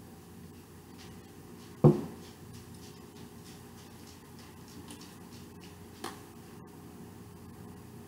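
Handling knocks: one sharp knock about two seconds in and a faint tap about six seconds in, over a steady low room hum.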